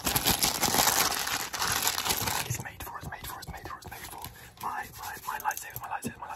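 Clear plastic crinkled and crumpled quickly in the hands close to the microphone, a dense crackling that stops about halfway through.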